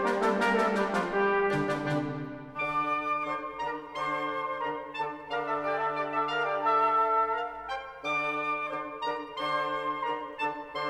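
Symphony orchestra playing with the brass to the fore. The first couple of seconds bring loud chords with a run of quick, sharp accents, after which the brass holds chords over a sustained low note.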